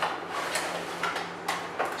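A cardboard box being opened and its plastic packaging insert slid out: scraping and rustling with several sharp clicks and taps.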